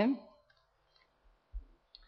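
A woman's voice trailing off at the end of a word, then a pause with a faint low bump about one and a half seconds in and a short click just before the end.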